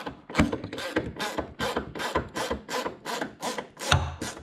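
Hand ratchet clicking in rapid, even strokes, about five a second, as a bumper screw is driven in and snugged up.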